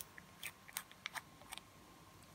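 A handful of faint, irregular clicks and ticks as the black screw cap is twisted on a small glass nail polish bottle.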